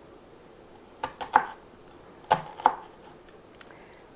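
Kitchen knife cutting through a peeled onion and striking a plastic cutting board: sharp chops in quick pairs, about one second in and again just past two seconds, with a faint tap near the end.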